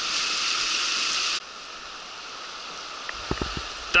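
Fast river water rushing over a gravel riffle, a steady hiss; about a second and a half in, it cuts abruptly to a quieter flow of water, with a few soft low thumps near the end.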